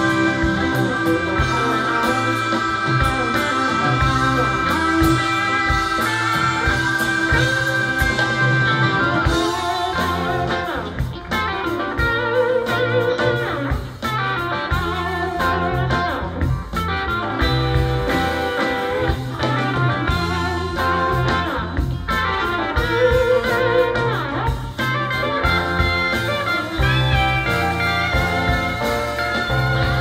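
Live rock band playing an instrumental break with electric guitar, trumpet, bass and drums. One long held note carries the first nine seconds or so, then a busier lead line with bending notes plays over the steady beat.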